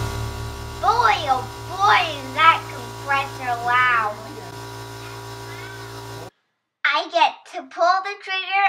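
A high-pitched voice talking over background music of steady held tones. The music cuts off suddenly about six seconds in, and after a brief silence the talking resumes.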